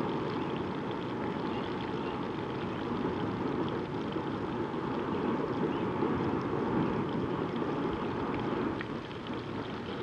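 Breaded bull testicles (mountain oysters) frying in hot peanut oil in a skillet: a steady sizzle with faint crackles over a low steady rush.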